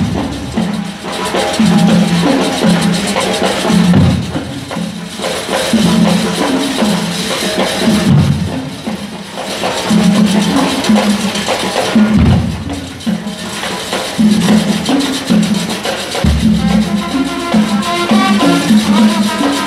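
Marching brass band playing a Latin-style tune: a low brass bass line with higher brass and clattering percussion. A deep low hit falls about every four seconds.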